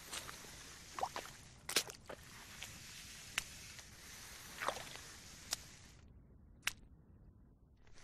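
Faint, scattered squelches of boots stepping through soft tidal mud as a sea kayak is hauled across the flats, over a steady low hiss that drops away about six seconds in.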